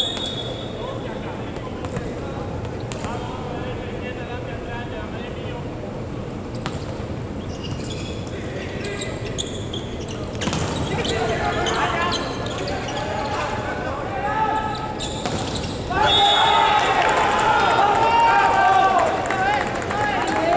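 Indoor volleyball rally: a few sharp ball hits and players calling out over a steady murmur of voices, then loud shouting from the players from about sixteen seconds in as the point ends.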